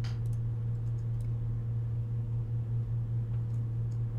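A steady low hum with a few faint computer mouse clicks scattered through it as a point is dragged and released.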